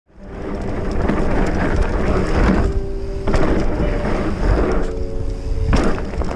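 Mountain bike riding down a dirt trail, with rushing wind on the microphone and tyre rumble over the dirt, fading in over the first half second. A steady buzz from the rear hub freewheeling comes and goes twice, and a loud thump lands near the end.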